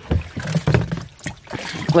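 Water splashing and sloshing in a black plastic tub as a net full of live fish is dunked and emptied into it, a run of irregular splashes.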